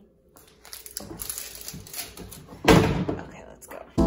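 Small handling clicks and rustling, with one loud thump about three seconds in.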